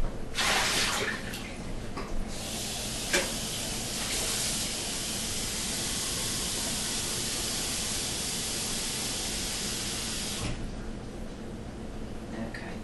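Water splashing out of a tray into a sink, then a tap running steadily into the sink for about eight seconds and shutting off near the end.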